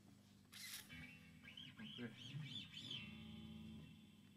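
Near silence: a quiet room with a faint low hum and a run of faint high chirps in the middle.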